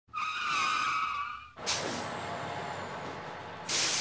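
Brakes squeal in a high, wavering note for about a second and a half, then cut off into a sudden burst of air-brake hiss that fades slowly. A second, louder hiss comes near the end.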